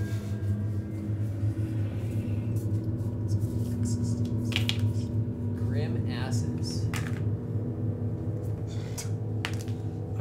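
Low ambient background music of steady droning tones, with a few sharp clicks of cards being handled on a tabletop and brief soft voice sounds about midway.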